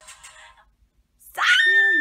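A woman singing a pop song, belting one loud, long held note that starts suddenly about a second and a half in after a short pause.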